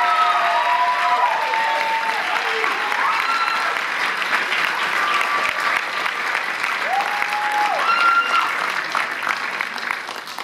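A large audience applauding, with a few held shouts and whoops rising above the clapping.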